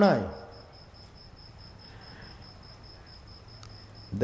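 A man's voice trails off, leaving faint hiss and a steady, evenly pulsing high-pitched insect chirping.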